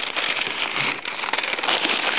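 A sheet of wax paper crinkling and rustling as it is handled and spread out, a continuous crackly rustle.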